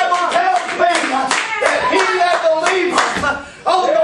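Steady rhythmic hand-clapping, about three claps a second, with a man's raised voice over it; both drop out briefly near the end.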